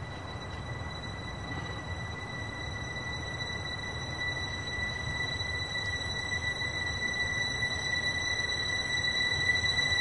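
A sustained high-pitched tone, steady in pitch, slowly swelling louder over a low rumble.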